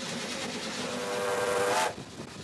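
The steam whistle of locomotive No. 18, blown from the cab by its pull cord: one blast that builds over about a second and cuts off sharply near the end, over the steady hiss of the working engine.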